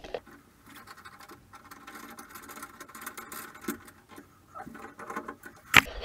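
Faint scraping and light clicking of metal as the chrome trim of an old brass shower valve is worked loose by hand, with one sharp click just before the end.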